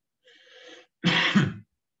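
A man coughs to clear his throat: a soft raspy lead-in, then one short loud cough about a second in.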